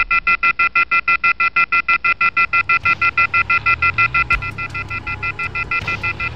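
Rapid electronic beeping, a fixed chord of high tones pulsing about eight times a second without a break. A low, gliding bass line joins about halfway through.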